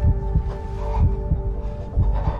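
Film score sound design: a heartbeat effect, deep thumps in pairs about once a second, over a sustained tense music drone.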